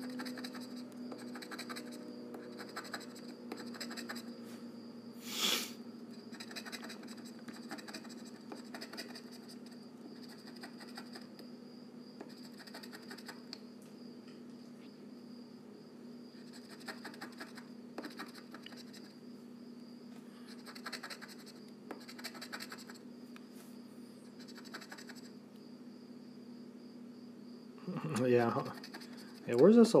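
Instant lottery scratch-off ticket being scratched off in many short scraping strokes, with one louder scrape about five seconds in, over a steady low hum.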